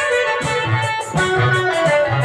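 Traditional accompaniment music for an Odia Ramanataka folk drama: a melody instrument over low drum strokes, with a fast regular high ticking of about four or five beats a second.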